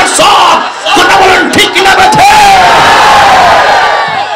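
A crowd of men shouting together, loud, with long drawn-out voices in the second half.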